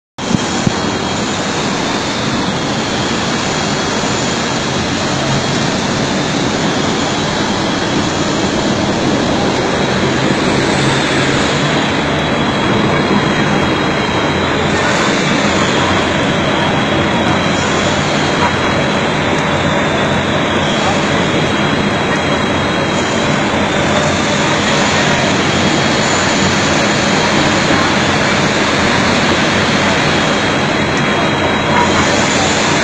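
Skip stranding machine running, with wire bobbins feeding aluminium wires into the strand: a loud, steady mechanical din.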